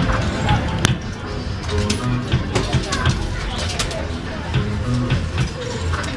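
Amusement-arcade din: game machines' music and electronic jingles over background chatter, with a few sharp clicks.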